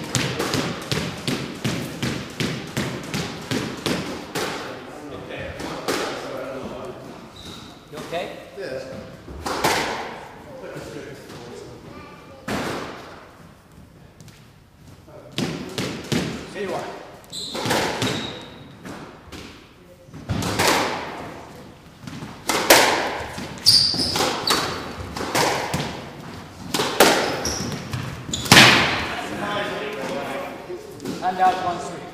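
Squash ball being struck by racquets and knocking off the walls and wooden floor of a squash court, a quick run of impacts in the first few seconds, then sparser clusters of knocks. The hits echo in the enclosed court.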